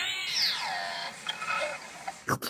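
Noo-Noo, the Teletubbies' vacuum-cleaner character, making its squeaky, warbling noises that slide down in pitch and then fade.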